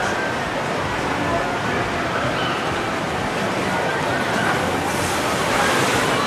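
Steady rush of water from a log flume: water pouring down the flume chute and spraying around a boat as it runs down the drop, with faint voices in the background.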